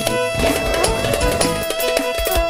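Dance music with a steady drum beat under sustained held tones.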